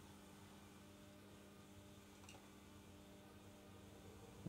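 Near silence: room tone with a faint steady hum and one faint tick about two seconds in.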